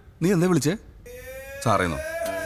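A man's voice speaking a short phrase with a wavering pitch, followed about a second in by a held background music note that rises slightly and keeps going under a further spoken sound near the end.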